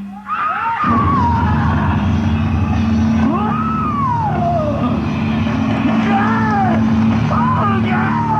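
Audience recording of a live rock band in a long wordless passage: a steady low drone with a high melodic line that bends up and down in pitch. The sound dips briefly just after the start, then comes back.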